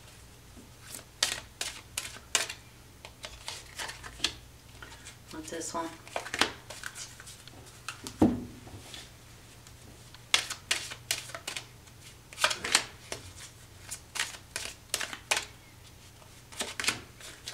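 Oracle cards being shuffled and dealt by hand: runs of quick, crisp card snaps and flicks in several clusters, with short pauses between them.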